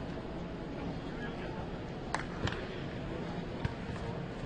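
Football training-session ambience in a large stadium: indistinct voices of players and coaches over steady background noise, with three short sharp knocks, two about two seconds in and one near the end.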